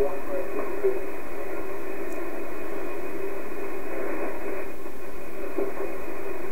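Shortwave receiver audio in sideband mode on an HF aeronautical voice channel: a steady, narrow-band static hiss with a low steady tone running through it.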